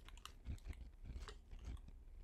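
Faint typing on a computer keyboard: quick, irregular key clicks with soft thuds of keys bottoming out.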